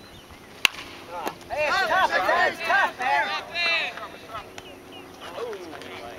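A bat hitting a pitched baseball: one sharp crack. About a second later several people shout and yell excitedly for a couple of seconds.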